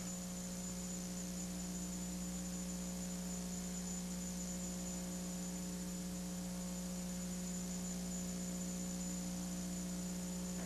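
Steady low electrical hum with a faint, thin high-pitched whine above it, unchanging throughout: mains hum on an old recording's audio track, with no other sound standing out.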